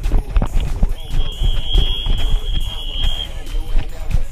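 A referee's whistle blown in one long steady blast, starting about a second in and lasting a little over two seconds. Under it run background music and the rumble and thumps of a body-worn mic moving with the player.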